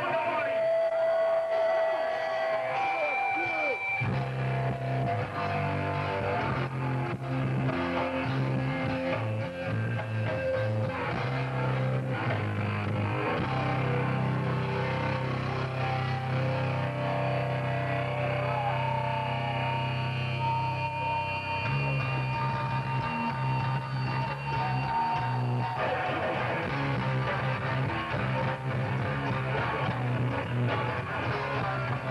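New York hardcore punk band playing live at full volume. It opens with a few seconds of held guitar tones, then the bass and the rest of the band come in about four seconds in.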